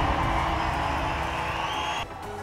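Background music fading away after a loud hit, with a faint rising tone near the end.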